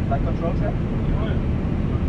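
Steady low rumble of an Airbus A320 flight deck on the ground with the engines running, during the flight control check. Faint voices can be heard over it in the first second or so.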